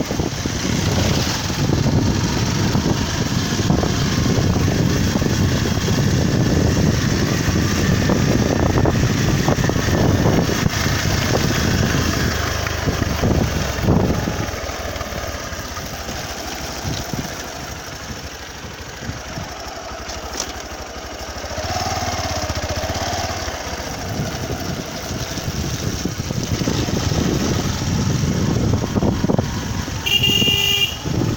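Small motorcycle engine running while the bike rides along, with wind rumbling on the microphone throughout. The sound drops quieter for several seconds in the middle, then picks up again.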